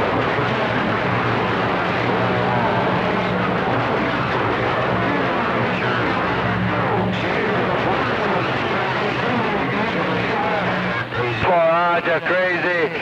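CB radio receiving a distant skip station on channel 28: a garbled, hard-to-follow voice buried in heavy static hiss, with a steady low hum under it. The incoming signal stops near the end.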